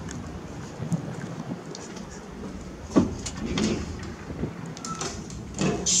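Outdoor wind buffeting the camera microphone as a steady rumble, with a few small knocks and one sharp knock about three seconds in.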